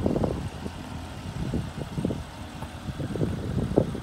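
Wind buffeting the microphone in irregular low gusts, over a steady low rumble.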